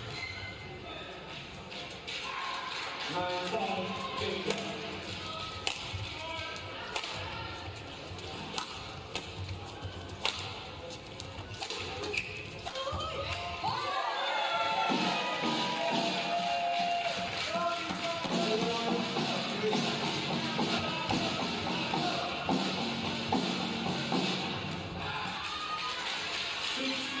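Badminton rally: sharp racket strikes on a shuttlecock and thumps of footwork on the court, over arena background music.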